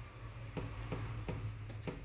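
Faint handling noise from a hand on a metal fan's wire grille: light rubbing with a few small clicks, over a steady low hum.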